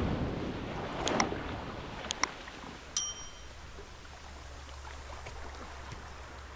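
Small waves washing up on a sandy beach, the wash slowly fading. Click sound effects from an on-screen subscribe animation come at about one and two seconds in, and a short bell ding near three seconds.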